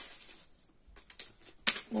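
A few short light clicks and rattles of small charms being stirred by hand in a fabric storage basket, the sharpest about one and a half seconds in.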